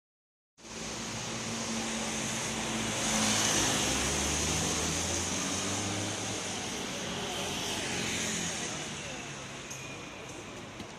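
A car drives past on a rain-wet street, its engine running low under a steady hiss of tyres on the wet road. It is loudest about three seconds in and then fades slowly.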